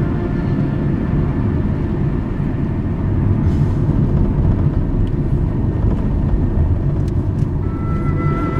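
Car driving along a winding road, heard from inside the cabin: a steady engine and tyre rumble.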